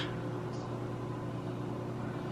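Frigidaire over-the-range microwave oven running with a steady hum partway through a 30-second heating cycle.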